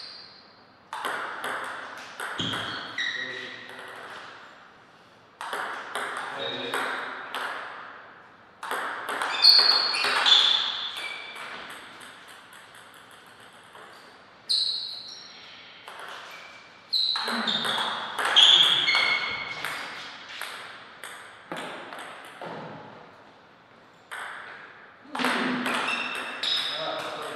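Table tennis ball being hit back and forth: runs of sharp clicks as it strikes the bats and the table, in several short rallies separated by pauses.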